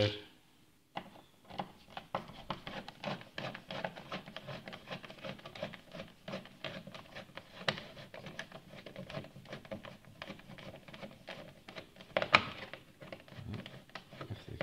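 Screwdriver turning the faceplate screws out of a plastic double wall socket: a dense run of small irregular clicks and scrapes, with one louder click near the end.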